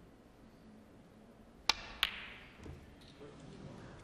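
A snooker shot: the cue tip clicks against the cue ball, and about a third of a second later the cue ball strikes the green with a sharper click; faint knocks follow as the green misses a pot it should have gone in.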